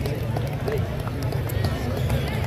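Performers' voices calling out in short shouts over a steady low rumble and scattered light taps, with no clear drum or cymbal rhythm.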